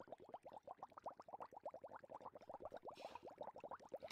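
Near silence, with a faint, rapid run of short rising chirps, about ten a second.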